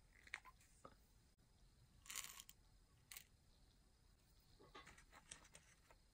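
Faint handling sounds from a plastic syringe and small fibre washers: a brief scrape about two seconds in as the syringe is pulled open, and a few light clicks and rustles around it.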